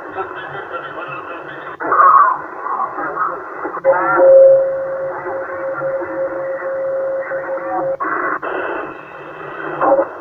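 Yaesu HF transceiver's speaker receiving the 27 MHz CB band during strong skip propagation: distant stations' voices garbled in static. A steady whistle comes in about four seconds in and stops about eight seconds in, and there are several sharp breaks as the signal cuts and changes.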